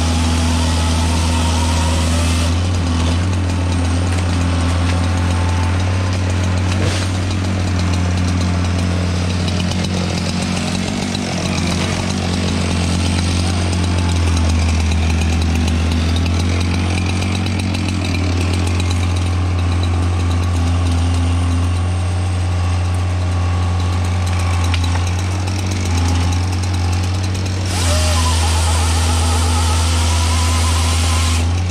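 Diesel engine of a tracked feller buncher running steadily under load, with the whine of its felling-head saw cutting into a tree trunk at the start and again near the end.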